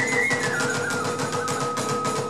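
Iwami kagura festival music: a bamboo transverse flute (fue) holds a high note, then steps down to a lower held note about half a second in, over a fast steady beat of drums and small hand cymbals.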